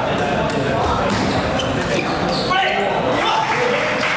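Table tennis rally: the celluloid-type ball clicks sharply off bats and table in quick succession in a large, echoing hall, over a steady murmur of spectators. The rally ends about halfway through, and voices rise and call out.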